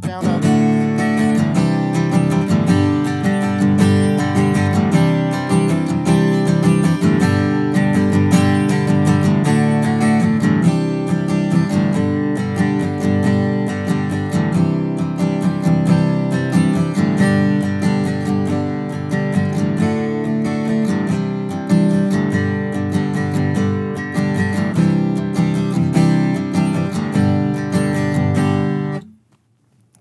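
Steel-string acoustic guitar strummed with a pick through a D, Cadd9 and G chord progression in 6/8, stopping about a second before the end.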